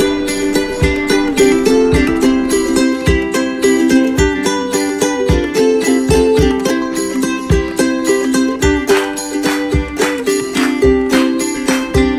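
Background music: a plucked-string tune over a steady beat.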